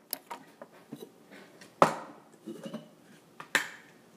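Plastic blender jar and bowls being handled and set down on a kitchen countertop: a series of light clicks and knocks, with two sharper knocks about two and three and a half seconds in.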